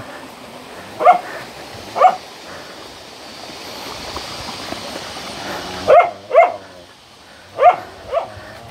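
A dog barking: five short, sharp barks, one about a second in, another a second later, a quick pair around six seconds, and one more near the end.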